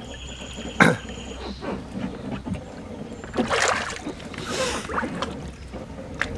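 Hot tub water sloshing over a steady low hum, with a sharp click about a second in and a few swishes of moving water in the middle.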